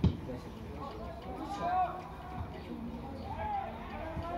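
A single dull thump of a football struck hard for a free kick, followed by indistinct shouts and voices of players and onlookers around the pitch.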